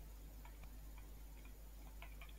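A few faint, irregular ticks of a stylus tapping on a writing tablet during handwriting, over a low steady hum.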